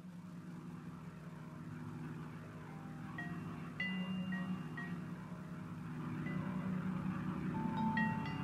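Sparse, soft vibraphone notes struck with mallets, a handful of high tones ringing on from about three seconds in, over a low sustained drone from the band.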